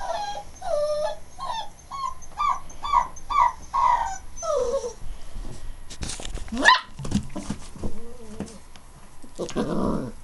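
Giant schnauzer puppy whimpering in a run of short, high yips, about two a second, over the first four seconds or so. About six and a half seconds in comes a single sharp rising cry, then softer low sounds.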